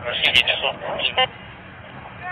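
Indistinct, thin-sounding voice chatter from a police radio for about the first second, with two sharp clicks near the start, then a quieter stretch.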